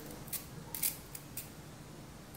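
A few short, sharp plastic clicks and snaps as hard plastic glue pens are pressed and knocked together, the loudest just under a second in.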